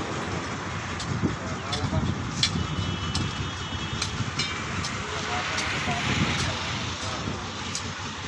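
Steady outdoor noise of road traffic with the low murmur of people standing around, and a few sharp clicks.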